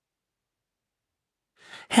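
Dead silence, then near the end a short, soft intake of breath by a man reading aloud, just before his speech starts again.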